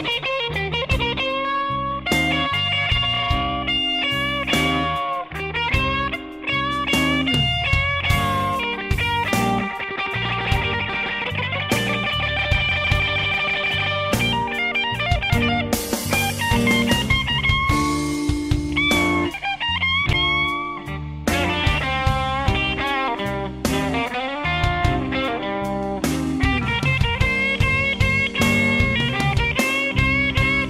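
Slow electric blues music: an electric guitar playing lead lines with bent notes over bass and drums.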